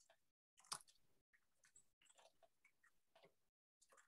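Near silence, broken by a few faint scattered clicks; the sharpest comes about three-quarters of a second in.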